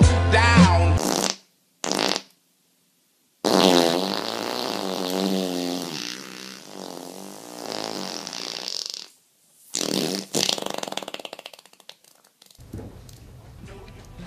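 A loud, drawn-out fart, wavering in pitch and slowly fading over about five seconds, comes after a short burst and is followed by two shorter, sputtering ones.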